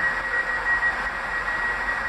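Northern class 195 diesel multiple unit standing at the platform, giving a steady hiss with a thin, high, steady whine.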